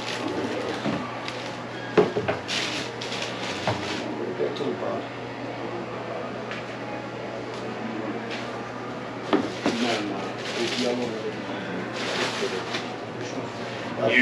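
Cardboard shoe boxes and their tissue paper being handled on a counter: a sharp knock about two seconds in, another near nine seconds, and short bursts of paper rustling, under low chatter.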